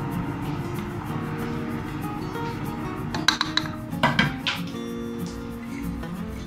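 Background music, with a ladle clinking a few times against a cooking pot about three to four and a half seconds in as soup is stirred.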